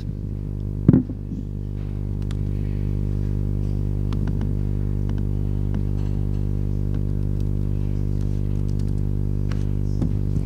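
Steady low electrical hum with many evenly spaced overtones, with a few faint clicks scattered over it.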